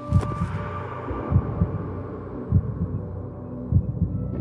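Dramatic underscore music built on a low heartbeat-like double thump about every 1.2 seconds, over held sustained tones. A sudden crash-like hit at the start fades away over about a second.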